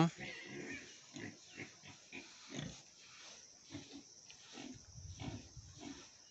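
Pigs grunting, faint and scattered in short separate calls.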